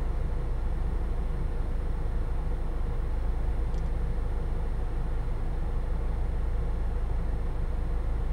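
Steady low background rumble with an even hiss, unchanging throughout.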